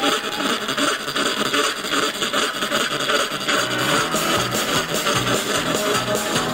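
A live band playing, with drum kit and electric bass, keeping a fast, even beat. The sound is dense and rough.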